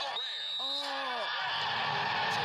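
Sound of a televised football game played back through a TV sound system: a short pitched shout about half a second in, then a steady rushing noise of the crowd-and-field ambience.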